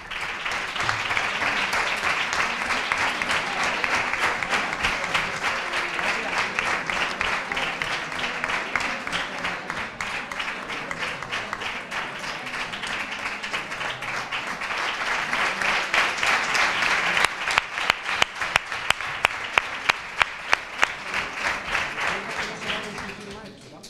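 Audience applauding throughout, swelling near the end, when a few sharp individual claps stand out above the rest.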